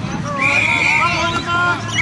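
Umpire's whistle: a long steady blast about half a second in, and a second blast starting near the end, over spectators' voices.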